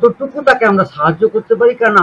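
Speech only: a man's voice talking steadily in a quick run of syllables.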